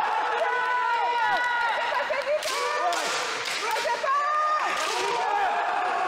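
Two kenjutsu fighters shouting long, drawn-out kiai at each other, their voices overlapping and sliding up and down in pitch. A cluster of sharp knocks about halfway through, and another near the end, as the practice swords strike.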